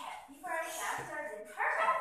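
A girl's voice in a dramatic, high-pitched theatrical storytelling delivery: two drawn-out, gliding phrases with a short break between them.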